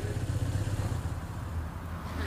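Steady low rumble under faint background noise, with no distinct events.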